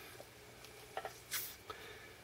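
Faint handling noise at a SkyRC MC3000 charger as an alkaline cell is put into a slot: a few soft clicks and a brief scratchy rustle about halfway through.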